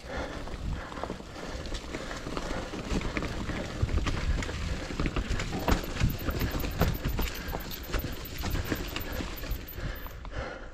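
Mountain bike riding over a dry, leaf-covered dirt trail: tyres crunching through leaves, with the bike rattling and knocking over bumps in a quick irregular run of clicks over a low rumble.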